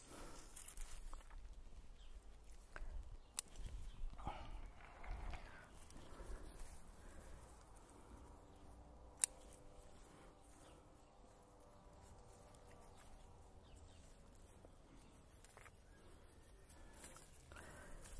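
Faint snips of bonsai scissors cutting leaves and shoots from a Japanese maple, with soft rustling of the foliage. One sharp snip about nine seconds in is the loudest sound.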